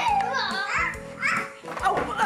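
Young children's high voices calling and chattering over background music, with brief breaks between outbursts.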